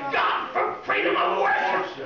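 A woman preaching into a pulpit microphone, loud and animated, in short phrases with brief breaks between them.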